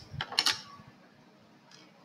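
Plastic Lego plates clicking against each other and the table as they are set down: a few quick clicks in the first half second.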